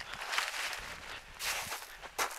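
Footsteps through dry scrub brush, the stems rustling and brushing against the walker in two longer stretches of noise.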